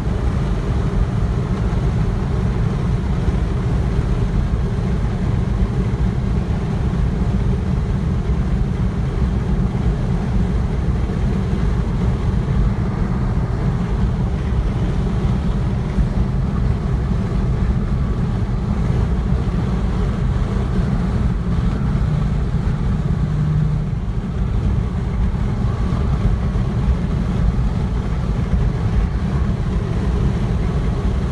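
Steady road noise heard inside a vehicle cabin at motorway speed: a continuous low rumble of tyres and engine with a haze of wind noise over it.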